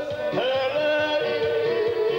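Male singer performing a ranchera live with a band: after a short slide he holds one long sung note over the band's accompaniment.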